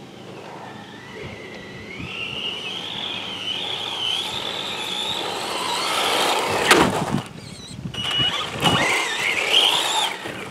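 Electric motor whine of a 1/10 rally RC car driven hard on pavement. The whine climbs in pitch and grows louder as the car speeds up, is loudest with a sharp burst about seven seconds in, drops away briefly, then returns near the end.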